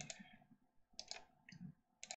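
Computer mouse buttons clicking faintly a few times, mostly in quick press-and-release pairs.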